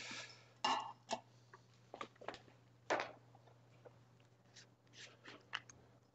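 A tap running briefly cuts off just after the start. Then come scattered light clicks and knocks of drinking glasses and a small reagent dropper bottle being handled, the loudest about three seconds in, over a faint steady hum.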